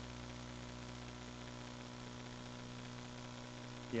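Steady electrical mains hum with faint hiss, the low-level room tone of the recording. A voice begins right at the end.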